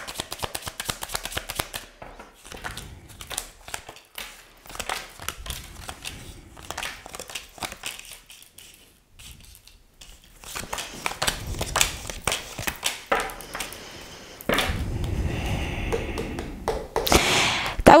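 A deck of tarot cards being shuffled by hand, a quick run of light papery clicks, then the cards dealt and laid out on a table. A louder, steadier rustle of cards sliding across the tabletop comes near the end.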